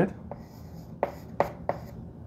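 Chalk writing on a blackboard: a few short scratchy strokes and taps, about four in two seconds, as numbers are written.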